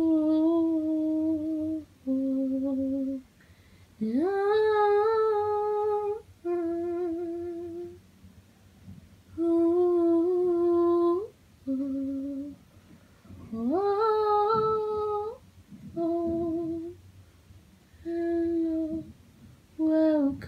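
A woman's voice humming a slow, wordless melody with no accompaniment: held notes with short pauses between them, twice sliding up into a longer note.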